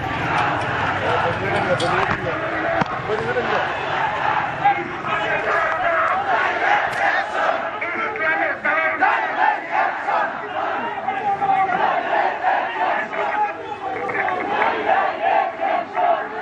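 A large marching crowd of men, many voices raised together without a break, as in a street procession calling out slogans.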